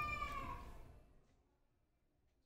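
A single high-pitched, drawn-out call that dips in pitch as it fades out about a second in, followed by dead silence.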